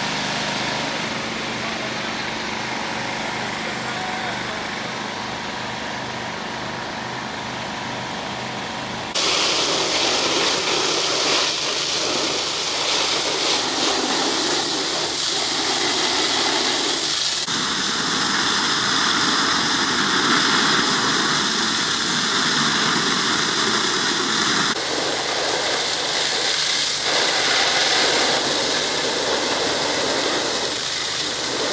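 A diesel engine idling with a steady hum, with voices. About nine seconds in this gives way suddenly to a louder, steady hiss of several fire hose jets spraying water.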